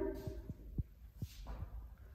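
Faint low thumps over a low rumble, the movement noise of a person walking with a handheld phone camera.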